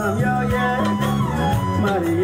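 Women singing a song into microphones over amplified instrumental accompaniment with steady held bass notes, heard through a PA system.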